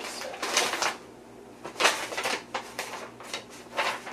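Rummaging through papers and things on a workbench: a run of short rustling and handling noises, the loudest about two seconds in.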